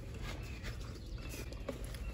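Quiet background: a steady low rumble with faint hiss and a faint tick near the end, with no clear event.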